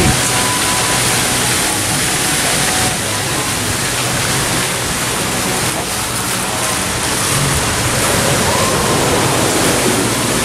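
Steady rushing of water, a loud even hiss that does not change.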